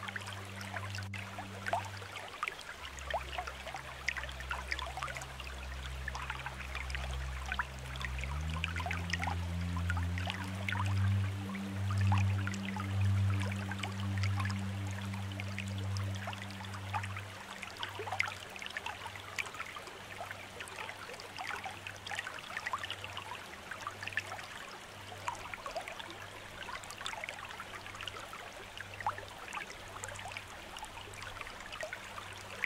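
Water trickling and splashing steadily down a small rock waterfall, with soft, low sustained music tones underneath. The music shifts to new notes about 3 s and 8 s in, swells, and fades back after about 17 s.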